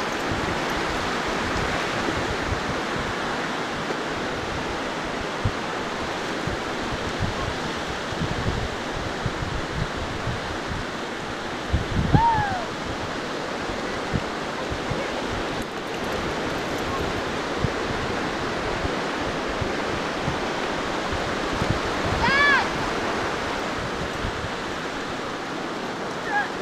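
Steady ocean surf washing onto a sandy beach, with a dog giving a short, high-pitched bark about halfway through and again near the end.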